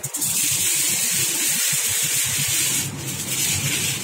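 Aluminium foil crinkling as it is folded over a whole fish into a packet: a long rustle for nearly three seconds, then shorter crackles near the end.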